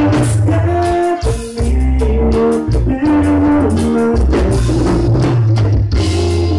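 A live band playing loud through the PA. Button accordion carries the melody in held, stepping notes over a drum kit, congas and guitars.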